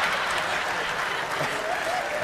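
A theatre audience applauding and laughing after a punchline, the applause slowly fading.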